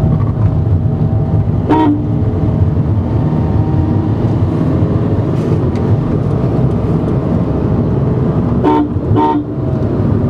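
Steady road and engine rumble inside a moving car, broken by short vehicle-horn toots: one about two seconds in and two close together near the end.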